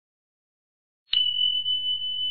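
Silence, then about a second in a click and a steady high-pitched whine over a low hum.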